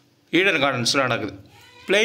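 A man's voice speaking narration: one short phrase, a brief pause, then speech again just before the end.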